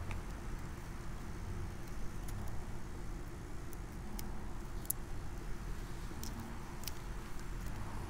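Electrical tape being stretched and wrapped tightly around an apple tree graft, heard as faint scattered clicks over a low steady rumble.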